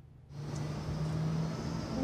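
Outdoor street ambience: a steady hum of distant traffic that fades in after a brief hush about a third of a second in.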